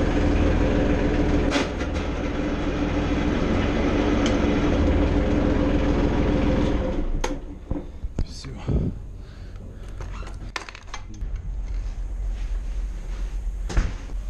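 An enclosed lifeboat's diesel engine running steadily, given a short run without warming up, then shutting down about seven seconds in. A few clicks and knocks follow in the quieter hull.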